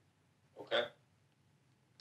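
A man's single brief vocal sound, lasting about a third of a second, a little over half a second in. The rest is near silence.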